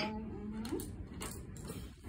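A brief hummed "mm" from a girl, then faint, soft rustles and light clicks as she handles a small gift box.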